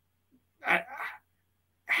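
A man's short, non-word vocal noise a little over half a second in, in two quick parts: a pitched burst, then a quieter, breathier one.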